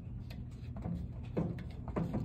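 Plastic bottles being handled on a shelf: a few light knocks and clunks as they are picked up and moved, over a steady low hum.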